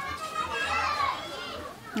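High-pitched children's voices, without clear words, fading out near the end.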